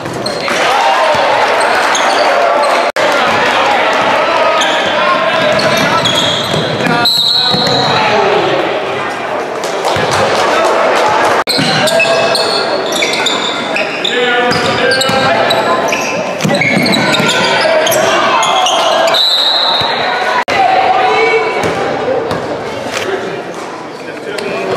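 Spectators yelling and cheering in a gym during a high school basketball game, with the ball bouncing on the hardwood court and short high squeaks from sneakers.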